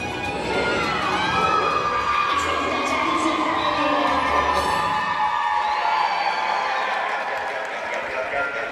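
A large audience of teenagers cheering and shouting, with high-pitched screams rising above the crowd.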